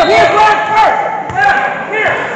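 Several voices shouting and calling out across a gymnasium during a break in basketball play, echoing in the hall.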